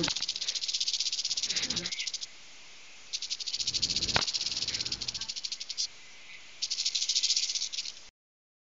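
Cockatiel hissing with its beak open in fast rattling pulses that sound like a rattlesnake's rattle, an angry threat display. It comes in three bouts, with a gap after about two seconds and another after about five, and a single knock about four seconds in.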